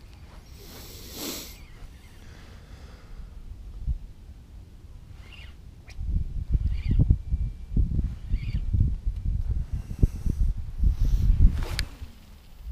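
Gusty wind buffeting the camera microphone, a low rumble that turns much louder and rises and falls from about halfway through. A brief whoosh comes near the start, three short faint calls in the middle, and a sharp click near the end.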